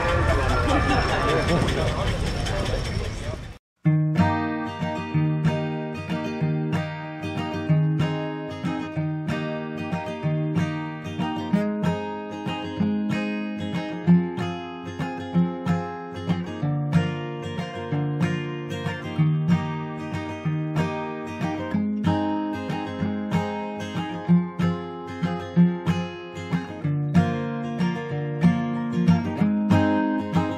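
Outdoor noise from a running vehicle, cut off abruptly about four seconds in. Then acoustic guitar music with a steady plucked and strummed rhythm.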